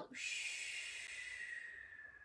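A woman breathing out slowly and deeply through pursed lips in a yoga breathing exercise: a long, steady blowing breath whose faint whistling tone slides slightly lower, fading toward the end.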